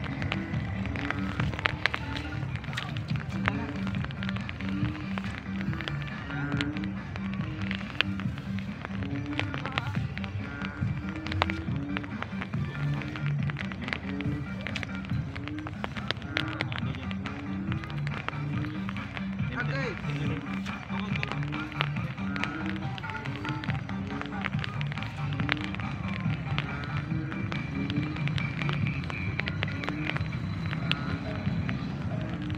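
Background music with a steady beat and a repeating bassline.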